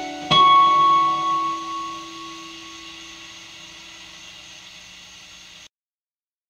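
Acoustic guitar struck once about a third of a second in, its closing chord left to ring and slowly fade, then cut off suddenly near the end.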